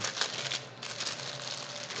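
Packaging rustling and crinkling as items are handled and pulled out of a box. It is loudest in the first second and quieter after that.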